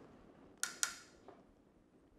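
Two sharp metallic clicks about a quarter second apart, the second ringing briefly, then a fainter click: a lighter being handled and clicked shut just after relighting a tobacco pipe.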